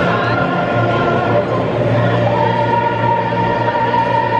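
Live singing in an operatic, choral style, with voices holding long notes; about two seconds in a new high note begins and is held steadily.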